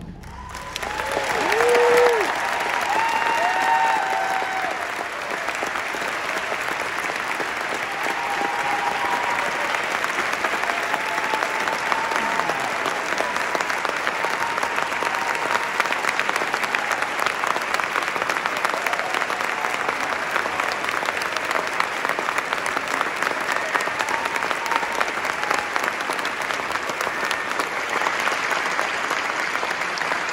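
A large audience applauding and cheering in a concert hall. The clapping swells in the first two seconds, with whoops and shouts over it, then carries on as steady applause.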